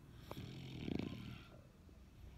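A sleeping dog snoring, one snore lasting about a second.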